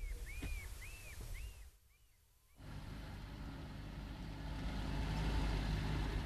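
A bird gives a quick series of arched chirps, about two a second. After a short gap, a van's engine comes in as a low rumble that grows steadily louder toward the end.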